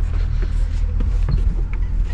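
A truck's engine idling as a low, steady rumble, with several short knocks and rustles from someone climbing onto the back of the truck and handling the camera.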